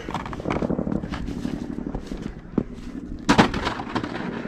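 Footsteps crunching in snow, a string of short irregular crunches, with a brief louder burst of sound a little over three seconds in.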